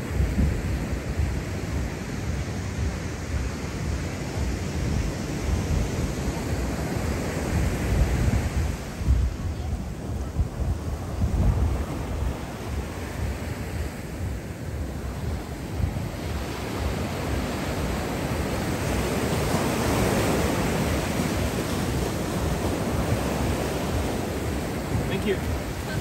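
Surf breaking and washing up over a sandy shore, with wind gusting on the microphone as a low rumble. The wash grows fuller about three-quarters of the way through.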